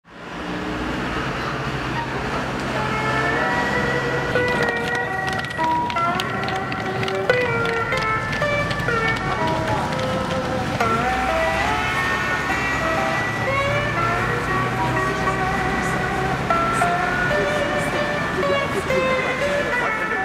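Slide guitar music, a melody whose notes glide between pitches, with a low steady street-traffic rumble underneath.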